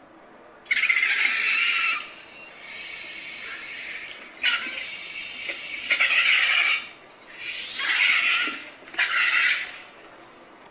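Recorded vulture calls played back from a small handheld sound player: a run of about six rasping hisses, each about a second long, the first one loudest.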